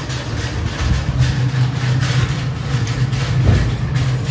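A steady low mechanical hum with a rough noisy rumble over it, like a motor or engine running without a break.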